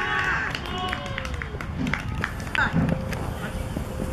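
Young footballers shouting and calling out across an outdoor pitch after a goal, loudest in the first half second, then scattered calls with a few sharp knocks.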